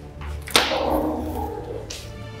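A single sudden loud hit about half a second in, dying away over about a second with a ringing tail.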